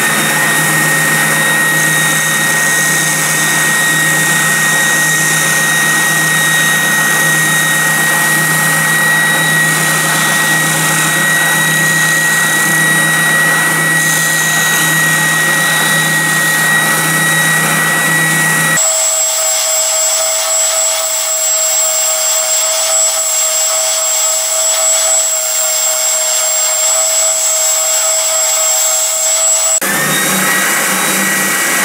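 Benchtop spindle sander running steadily with a high whine while a wooden plaque is sanded against its spinning drum. About 19 seconds in the sound changes abruptly to a different, higher whine with less low hum.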